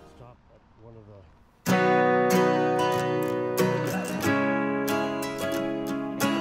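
Background music: after a near-silent first second and a half, strummed acoustic guitar music starts suddenly and carries on with ringing chords.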